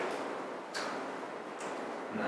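A few sparse, faint clicks from a laptop being typed on, over quiet room tone.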